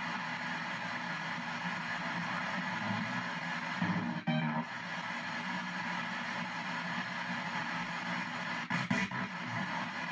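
P-SB7 ghost box in reverse sweep, stepping down the FM band every 200 ms. It gives a steady radio static hiss chopped with brief snatches of broadcast sound, with a short louder burst about four seconds in and another near the end.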